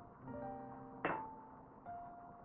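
Soft background music with sustained piano-like notes. About a second in there is a single sharp clink as a ceramic tea cup is set down on its ceramic saucer.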